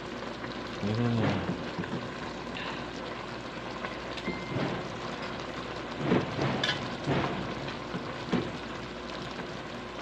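Pakbet vegetables simmering in an aluminium pot, a steady bubbling hiss, while a metal ladle stirs them with scattered short scrapes and knocks against the pot.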